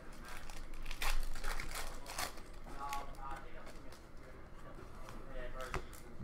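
Paper trading cards handled by hand: glossy card stock rustling as cards are slid one off another, with a few sharp flicks and taps of card edges. A faint voice is heard briefly in the middle.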